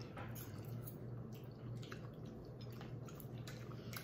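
Faint wet eating sounds from people eating spaghetti: scattered soft clicks and squelches of chewing and forkfuls of noodles, over a low steady hum.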